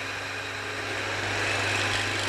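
Circular saw bench running without cutting: a steady machine hum that slowly grows a little louder, with a faint high whine near the end.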